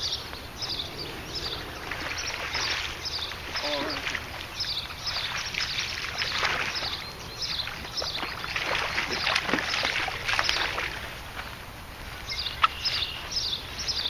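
Water splashing and sloshing as a small largemouth bass takes a topwater frog lure and is fought to the bank, loudest through the middle of the stretch. Throughout, a high chirp repeats about twice a second.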